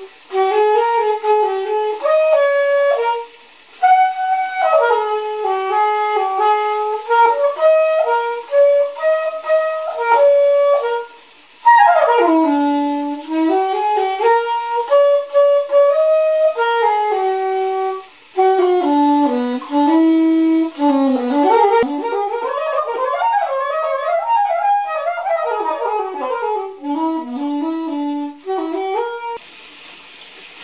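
Soprano saxophone playing an unaccompanied melody in phrases, with short breath pauses between them, and stopping near the end.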